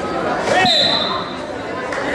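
A referee's whistle blows one steady high note for just over a second, starting about half a second in, just after a thump. It sounds over the voices and shouts of spectators in a large gym.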